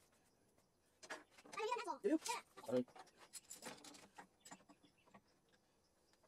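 Light clicks and scrapes of a pencil marking white PVC pipe and a pipe cutter being fitted onto it. A short wordless vocal sound from a person comes at about two seconds in and is the loudest thing.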